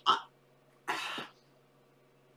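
A woman briefly clears her throat once, about a second in.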